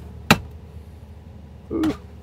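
A large steel combination wrench snapping onto a magnetic socket rail: one sharp metallic click about a third of a second in, as the strong magnets pull it onto the rail.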